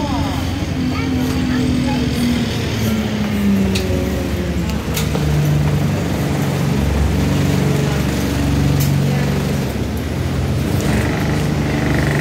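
Alexander Dennis Enviro200 single-deck bus's diesel engine heard from inside the passenger saloon. Its note falls over the first few seconds, then runs steady and lower, with faint voices in the background.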